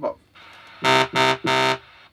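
A computer synthesizer's sawtooth patch, made of a main sawtooth wave blended with a little of the octave below and the octave above. It is played as three short notes at one steady pitch, each about a quarter second long, starting about a second in.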